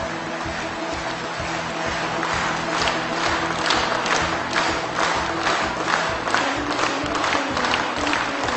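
Ceremonial music with held notes, joined from about two and a half seconds in by an audience clapping with an even beat.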